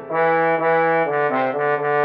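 MIDI-synthesized rendition of a men's four-part chorus arrangement, a baritone part-learning track: sustained synthesized tones in chords. After a brief break at the start, the chords change about every half second.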